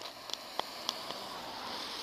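Car tyres hissing on wet asphalt as a car drives past, a steady wet-road hiss with a few light clicks in the first second.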